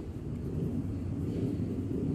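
A steady low background rumble, with faint scratching of a graphite pencil sketching on paper.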